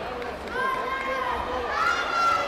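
Drawn-out, high-pitched shouts from voices in a sports hall during a taekwondo bout: one held for most of a second about half a second in, another starting near the end.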